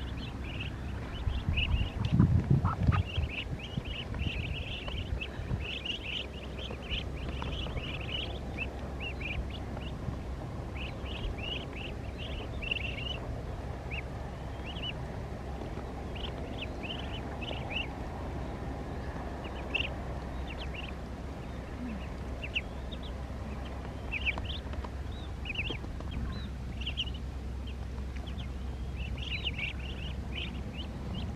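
A crowd of Muscovy ducklings peeping in many short, high chirps as they feed from a hand. A burst of low rumbling about two seconds in is the loudest sound.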